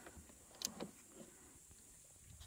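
Near silence with two faint short clicks a little over half a second in: the plastic fuel valve knob of an Einhell TC-IG 2000 inverter generator being turned to ON, the engine not running.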